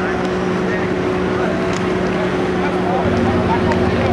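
Wheeled excavator's diesel engine running steadily at idle, a deeper engine note joining about three seconds in, with voices chattering in the background.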